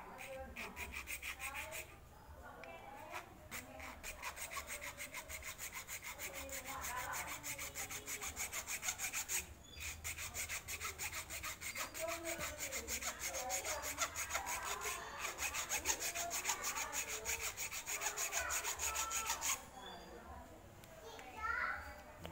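Hand-held hacksaw blade sawing diagonal grooves into the friction lining of a motorcycle drum brake shoe, in rapid back-and-forth strokes. It breaks off briefly twice and stops a couple of seconds before the end. The grooves are cut so that brake dust collects in them, a cure for squealing brakes.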